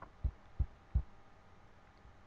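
Three soft, low thuds about a third of a second apart, with a faint tick just before them: computer mouse clicks picked up through the desk by the microphone.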